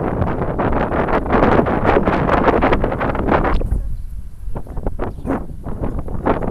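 Wind buffeting the phone's microphone in a moving car, loud and dense for the first three and a half seconds, then dropping to irregular gusts.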